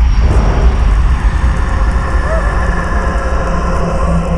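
A loud, steady low rumble with a hissing whoosh over it, starting suddenly and holding throughout: a horror-film sound-effect drone.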